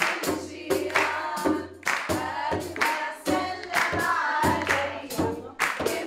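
Women singing a folk song together in chorus over a steady beat of hand drums, about two strikes a second.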